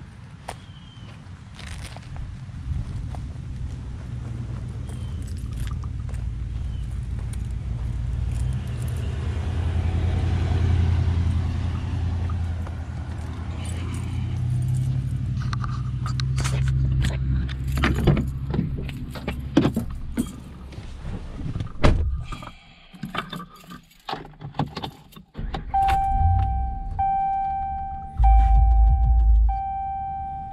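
Walking up to a pickup truck with a low rumble of movement and wind, then clicks and rattles of keys and the door handle as the door is opened. Inside the cab a steady electronic chime starts sounding near the end, with a heavy thud as the door shuts.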